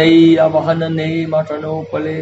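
A man chanting a devotional verse in long, held tones, the pitch stepping between a few sustained notes.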